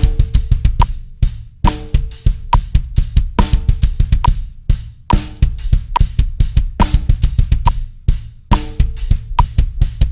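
Drum kit played with a double bass drum: fast, steady kicks under snare, hi-hat and cymbals in a pattern repeating about every second and three-quarters. The feet move from eighth notes to eighth-note triplets, sixteenths and sixteenth-note triplets, so the kick part speeds up.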